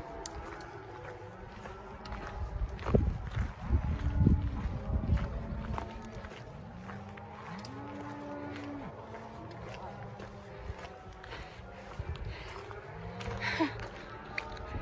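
Cows bawling with long moos, several calls in all, one held about a second and a half near the middle: mother cows calling for their yearling calves, which have been taken away from them. Thumps and rustling, loudest a few seconds in, come from someone walking through tall grass.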